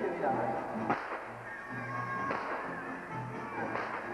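Stage gunshots fired with blanks: three sharp cracks, about a second and a half apart, over background music.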